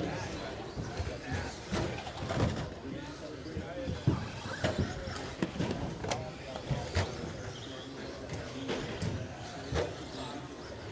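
Radio-controlled stock-class short-course trucks racing on an indoor track, with scattered sharp clacks of the trucks crashing and landing, the loudest about four seconds in. A steady murmur of voices fills the hall.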